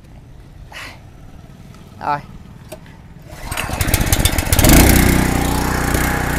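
Takata four-stroke gasoline engine with a gear-driven slanted output shaft being pull-started about three and a half seconds in. It catches on the first pull and settles into a steady run.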